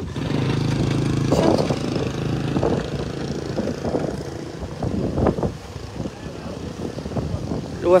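Murmur of voices from people talking around the microphone, fainter than a close speaker. A steady low hum runs under it for the first two seconds or so, then fades.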